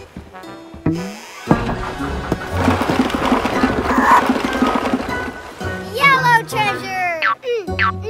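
Cartoon sound effects over children's background music: a short springy boing about a second in, then a long clattering rumble of a wooden barrel tipping and rolling, followed by squeaky cartoon character vocalizations near the end.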